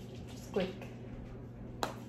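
A short murmur of a voice about half a second in, then one sharp click near the end from handling the eye shadow palette and brush.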